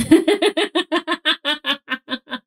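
A woman laughing hard: a quick run of about a dozen short 'ha' bursts that slow and fade near the end.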